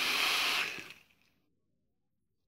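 Hissing draw on a rebuildable dripping atomiser with a single Clapton coil fired at 40 watts: air rushes through it as the coil vaporises the e-liquid. It fades out about a second in and near silence follows.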